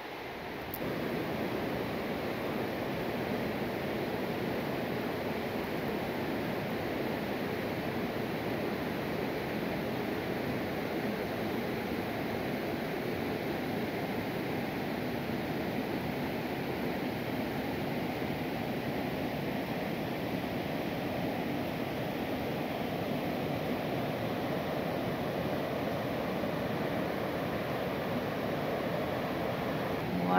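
Steady, even rush of fast-flowing river water, starting about a second in and holding at one level throughout.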